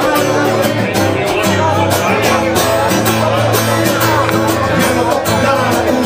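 Live band music played in a pub, with plucked strings over held bass notes, apparently an instrumental passage.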